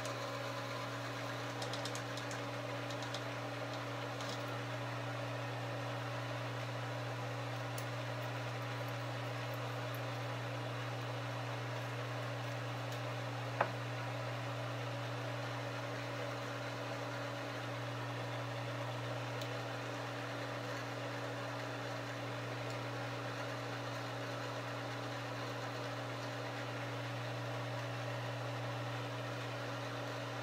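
Frankford Arsenal Case Trim and Prep Center's electric motor running steadily as brass cases are held to its spinning trim and prep tools, with one sharp click about halfway through.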